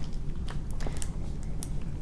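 A few faint, light clicks and handling noise as a peridot bead is threaded onto fine jewellery wire by hand.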